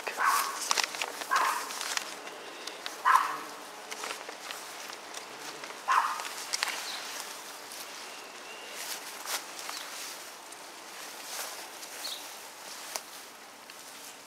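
Footsteps and rustling as someone walks through tall grass and garden plants, with a few short, louder sounds scattered through the first half.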